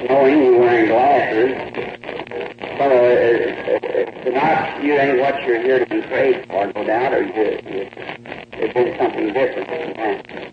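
Speech only: a man preaching, on an old sermon recording.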